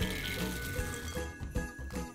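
Mixed nuts poured from a glass jar into a ceramic bowl, clattering as they land, with a run of clicks in the second half. Soft background music with held notes plays underneath.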